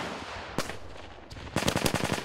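Small-arms gunfire on a live-fire range: the echo of a shot dies away, a single shot cracks about half a second in, and a rapid burst of automatic fire comes near the end.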